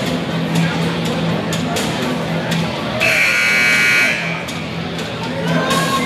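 Basketball scoreboard buzzer sounding once for a little over a second, about three seconds in. It marks the end of a timeout. Music plays and people talk around it.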